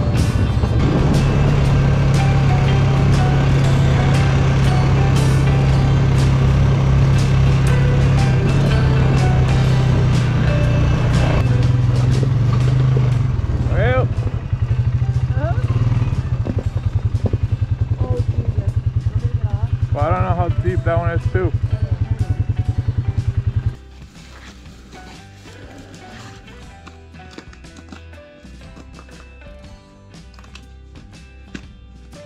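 Polaris ATV engine running steadily as it rides the trail, then cutting off sharply about 24 seconds in, leaving much quieter outdoor sound.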